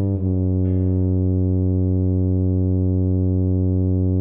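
A tuba, alone, plays a short note and then holds one long low note for about four seconds, the whole note that ends the phrase.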